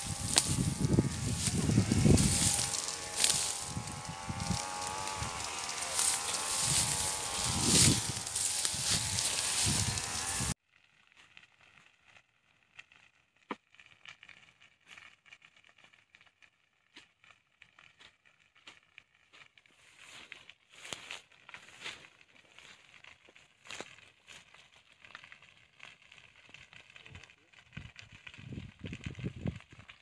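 For about the first ten seconds, a loud voice with wavering pitch, which cuts off suddenly. After that, faint crackling and scattered snapping from burning grass and undergrowth in an oil-palm plot, with the crackles thicker in the last ten seconds.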